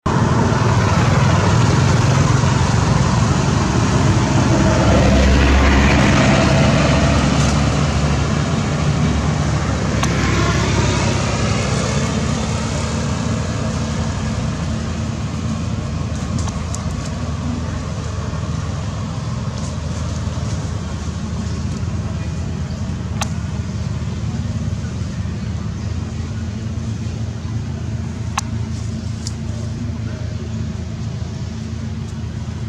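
Motor vehicle traffic with a steady engine hum. A vehicle passes loudest in the first several seconds and another about ten seconds in, and a couple of sharp clicks come near the end.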